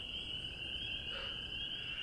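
A steady, high-pitched night-time chorus of calling animals, such as crickets, katydids or tree frogs, sounding on and on at the same pitch with no break.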